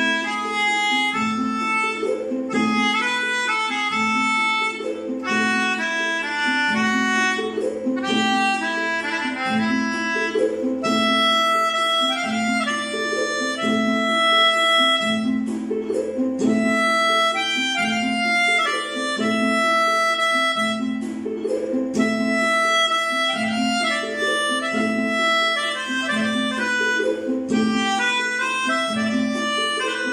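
Melodica playing a Malayalam film-song melody in held, reedy notes, over a low accompaniment pattern that repeats about once a second.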